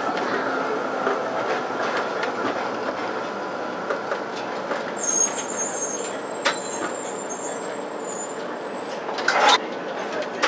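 Melbourne tram running on its rails, heard from the driver's cab: a steady running noise of wheels on track, with a thin high wheel squeal from about halfway that fades out near the end. A few sharp clicks, and a louder clatter near the end.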